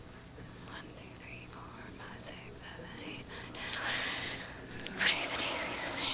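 Faint whispering and low murmuring over a steady low room hum, growing a little louder about four seconds in.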